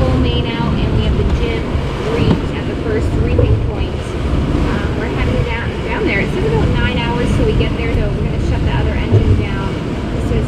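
Steady wind on the microphone and the rush of waves and wake water past the hull of a sailboat under way in a choppy sea. A woman's voice talks faintly under it in places.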